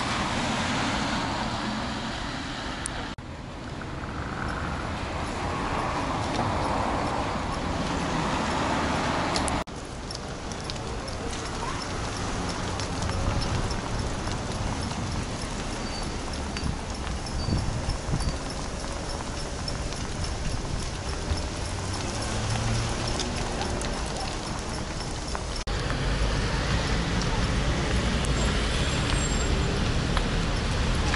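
Homemade cargo-bike camper riding over wet brick paving, its welded frame and load rattling and clattering over the bricks, with tyre noise.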